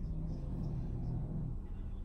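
Low, steady background rumble, with a faint low hum over the first second and a half.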